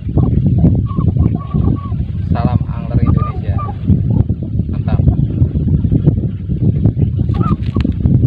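Wind rumbling hard on the microphone over a man's voice, with a few short honking, fowl-like calls mixed in.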